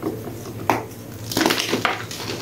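Grey reformed gym chalk crushed and crumbled by gloved hands: a single sharp crunch a little before halfway, then a dense run of crunching through the second half.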